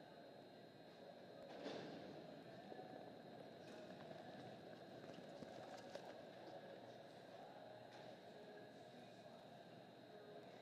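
Near silence: faint arena background noise with a few faint knocks.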